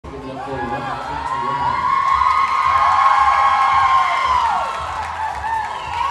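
Audience cheering and screaming, many high voices in long overlapping shouts and whoops. It swells to a peak in the middle and dies down over the last second or so.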